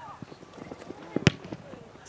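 A football kicked hard once, a sharp thud about a second in, with faint shouts of players in the background.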